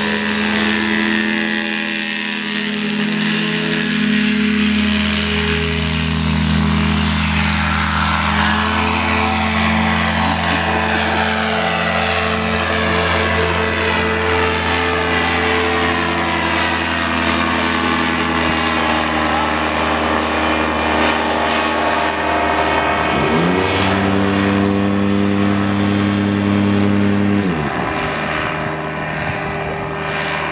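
Paramotor trike's engine and propeller running at take-off power, a steady loud drone as the trike runs, lifts off and climbs away. Near the end a higher engine note rises in, holds for about four seconds, then drops away.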